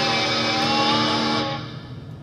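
Distorted electric guitars holding the final chord of a heavy metal song, which rings steadily and then fades out about one and a half seconds in.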